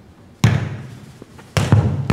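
A football being struck during a rally: two sharp hits, about half a second in and again near the end, each echoing in a large hall.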